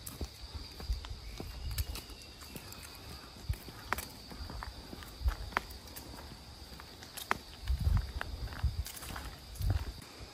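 Footsteps of heeled sandals clicking irregularly on a woodland path, over a steady high insect drone, with a few low thuds on the microphone around two seconds in and near the end.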